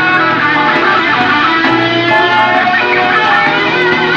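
Live 1970s progressive rock band playing an instrumental passage: electric guitar playing sustained melodic lines over a bass guitar, captured on an analog cassette recording with the top end cut off.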